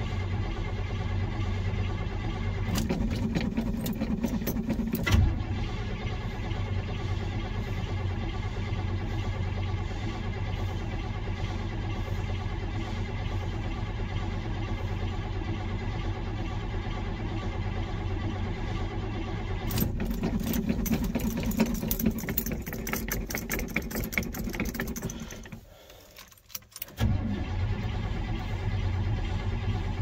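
1978 Chevrolet C10's 350 V8 being cranked over and over by its starter without starting, fuel not yet drawn up to the carburettor after months of sitting. It grows louder and rougher twice, about three seconds in and again around twenty seconds in. The key is let go for about a second and a half near the end, then cranking resumes.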